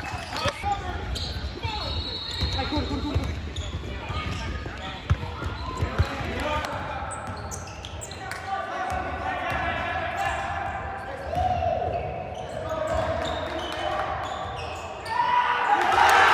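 Basketball game in a gym: a ball bouncing on the hardwood court, with players and spectators calling out. The voices get louder shortly before the end.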